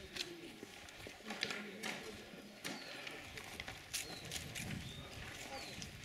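Faint background voices with scattered light clicks and knocks.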